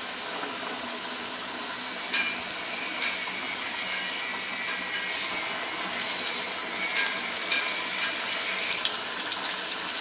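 Flour-coated chicken deep-frying in hot oil in a steel pot: a steady sizzle with scattered crackles and pops, growing a little louder over the seconds.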